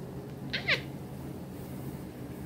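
A single short, high call of two quick parts, each falling in pitch, about half a second in, over a steady low room hum.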